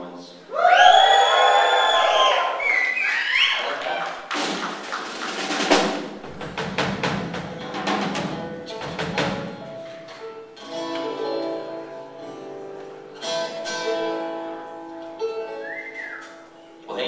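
A live folk-rock band warming up on stage. A loud, high, held sound with a slide comes near the start, followed by scattered knocks and strums. Several instruments then hold steady notes together over the last few seconds.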